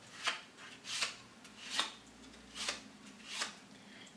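Playing cards being handled: about five soft, brief card snaps or slides, a little under a second apart, as cards are spread and shown one at a time.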